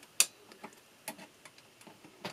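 One sharp click about a quarter second in, then a few faint, irregular clicks and taps from the metal and plastic parts of an Apple MF355F floppy drive's mechanism as its slide rail is pushed back into place by hand.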